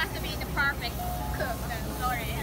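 Voices of people talking in a crowd over background music, with a steady low hum underneath.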